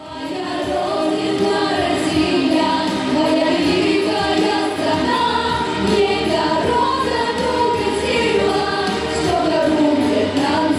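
Three young women singing together into handheld microphones, a female vocal group performing a song.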